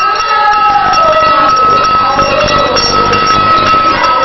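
Voices singing together over a regular clicking percussion beat, with a steady high-pitched whine underneath.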